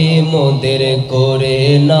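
A man singing a Bangla naat, an Islamic devotional song, into a microphone, drawing out a long sustained note that bends in pitch.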